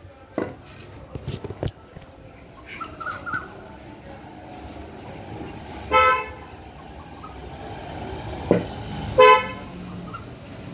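Two short honks of a vehicle horn, one about six seconds in and one near the end, each a single flat note. A sharp knock comes just before the second honk, and a few clicks and knocks in the first two seconds come from the phone being handled.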